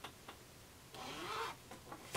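Faint rustling of a black skirt and its lining being gathered and smoothed by hand, with a few light clicks and taps from the handling.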